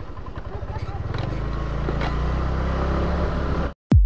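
Motorcycle engine running as it rides along a street, its note growing a little stronger about a second in. Near the end the sound cuts off suddenly, and a deep electronic drum hit from outro music follows.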